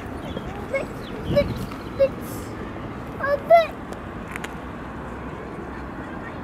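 A toddler's short, high-pitched vocal sounds: a few brief wordless exclamations, with a louder squeal about three and a half seconds in, over a steady outdoor background hiss.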